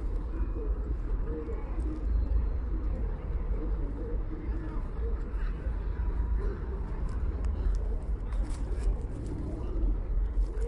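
A steady low rumble with indistinct voices talking underneath.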